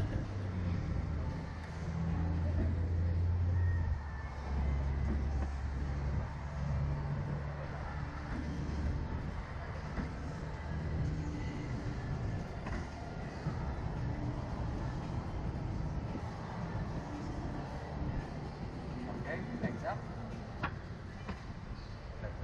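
Low mechanical hum of a Slingshot reverse-bungee ride's cable winch lowering the rider capsule back to the ground. The hum changes pitch about four seconds in and fades after about eleven seconds, leaving a steady rushing noise.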